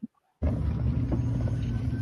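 Steady road and wind rumble of a moving car, picked up by a phone inside the cabin; it starts abruptly about half a second in.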